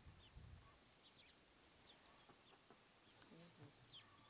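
Near silence in dry bush, with a few faint, scattered high bird chirps.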